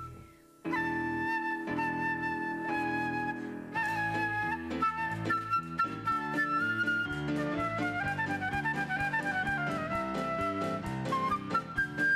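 Concert flute playing a melody over a lower accompaniment. After a break of just under a second it comes back in with a few long held notes, then moves into quicker running passages that fall and rise again.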